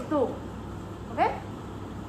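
A woman's voice: the tail of a spoken syllable at the start, then one short rising, questioning call like "huh?" about a second in, over a steady low hum in the room.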